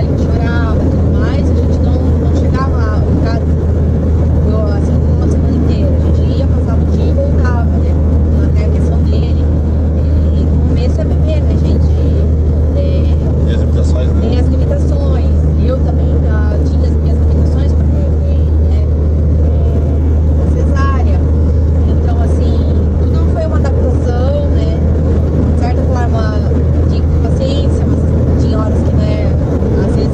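Steady low drone of a Volkswagen Kombi's engine and road noise, heard from inside the cabin while it drives along, with voices talking over it now and then.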